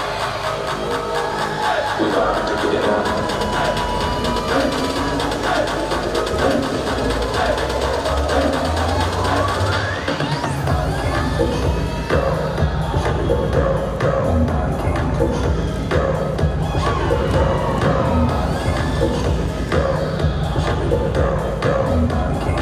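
Loud pop dance music for a stage routine, with an audience cheering over it. About halfway through, a rising sweep leads into a heavy, steady bass beat.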